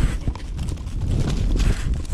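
Rumbling, jostling noise from a camera strapped to a dog's collar as the dog moves about, with the thuds of its footfalls on grass.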